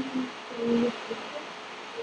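A child's voice, faint and distant, answering very quietly in two short fragments over a steady background hiss.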